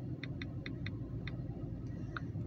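A quick, uneven run of light clicks, about six in the first second and a half and two more near the end, like keys being tapped on a device while a web address is typed in, over a low steady rumble.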